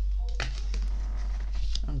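Tarot cards being shuffled by hand as a card flies out of the deck, with a sharp snap about half a second in. A steady low hum runs underneath.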